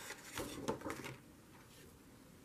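A sheet of scrapbook paper rustling and crackling softly as it is handled and slid across a notebook page, in a short flurry during the first second.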